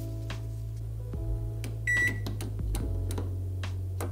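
Background music with steady low notes, over which an electric oven's control panel gives one short, high beep about halfway through, with a few light clicks around it.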